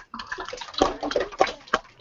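A class of schoolchildren applauding, heard over a video-call link: an uneven run of claps with a few single sharp claps standing out.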